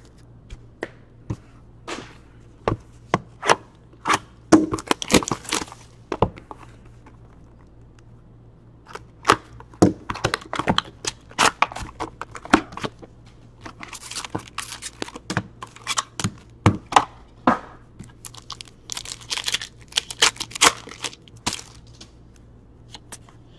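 Trading card packs being torn open and cards handled: irregular crinkling and sharp clicks in several bursts, with a pause of about two seconds a third of the way in.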